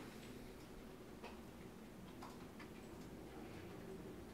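Very quiet room tone, a steady low hum, with a few faint, irregular clicks.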